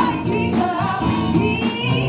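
A woman singing into a microphone over backing music, her voice wavering on held notes.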